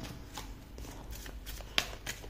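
A deck of oracle cards being handled and shuffled: a few light, scattered card flicks and taps, the sharpest one just before the end.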